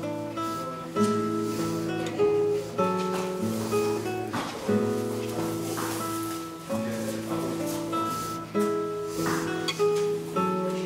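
Background music: acoustic guitar playing a slow, plucked and strummed melody.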